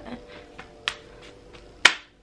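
Two hand claps about a second apart, the second louder and sharper.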